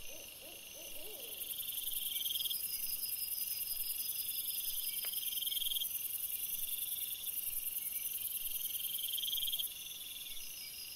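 Night insects chirping: a steady, very high trill runs throughout, with shorter, lower trills repeating every two seconds or so. For about the first second a quick run of low, pulsing calls fades out.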